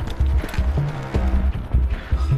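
Tense action-drama score: a driving low pulse repeating several times a second, with short percussive hits over it.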